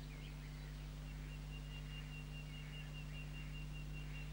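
Faint background of an old tape transfer, a steady low hum and hiss. From about a second in, a thin, steady, high whistling tone is held for about three seconds.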